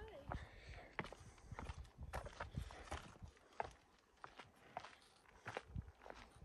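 Footsteps on a stone-paved mountain path at a steady walking pace, a faint step about every half second to second. Brief voices of passing hikers come at the very start.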